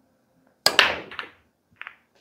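Pool break shot: the cue ball smashes into the racked balls with a loud crack about two-thirds of a second in, followed by about half a second of balls clattering against each other. Near the end come two sharp clicks of balls striking.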